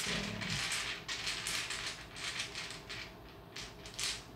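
Tarot cards being shuffled by hand: a quick run of papery slaps and rustles that thins out and fades near the end.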